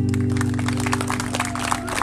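The last chord of an acoustic guitar and violin song ringing out and slowly fading, while audience clapping starts up and runs on over it.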